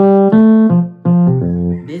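Yamaha portable keyboard on its E.Piano 1 voice playing a left-hand bass line: a short run of held notes stepping down in pitch.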